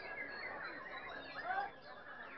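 Many caged songbirds singing at once, a dense tangle of quick chirps and glides over crowd voices. A louder call stands out about one and a half seconds in.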